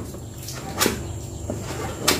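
A kitchen knife chopping pink dough into strips on a large metal tray, the blade knocking on the metal: one loud knock a little before the middle and fainter taps around it.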